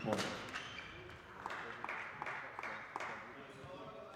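Sports-hall background: faint voices with a handful of short, sharp knocks and taps scattered through it.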